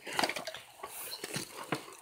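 Handling noise from a tablet being carried and moved about: fabric brushing over its microphone and light, irregular clicks and knocks.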